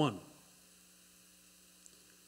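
Faint steady electrical hum from the microphone and sound system, after the last word of speech trails off just after the start.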